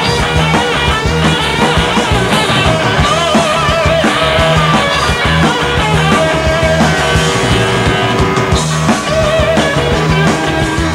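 Live rock band playing an instrumental passage: electric guitar lines over bass and drums, loud and unbroken.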